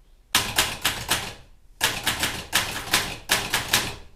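Vintage manual typewriter being typed on: keys striking in two quick runs of clattering keystrokes, about seven a second, with a short pause between them about a second and a half in.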